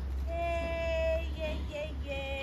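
A high voice sings one long held note, then two short notes, over a steady low rumble.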